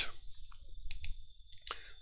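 A few computer mouse clicks: two close together about a second in and another near the end.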